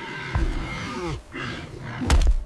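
Gruff, roar-like animal growls in two bouts, each falling in pitch, over background music.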